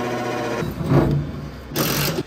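Cordless drill motor whining at a steady speed as it drives sheet-metal screws, stopping about half a second in, then a short second run and a brief scraping hiss near the end.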